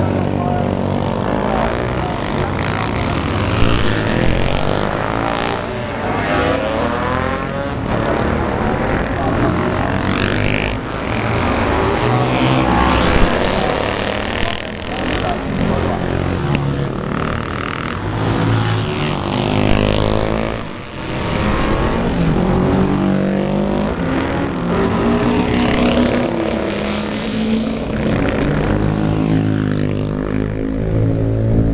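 Classic 500 cc racing motorcycles passing at speed under hard acceleration, one after another, their open exhausts loud. The engine note of each bike drops in pitch as it goes by.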